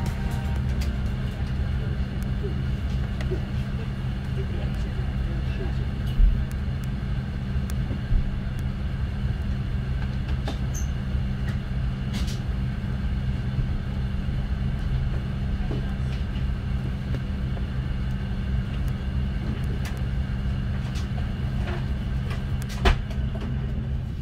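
Inside the cabin of an Airbus A330-300 taxiing on idling jet engines: a steady low drone with a thin, even whine over it. A few short knocks come about six and eight seconds in and again near the end.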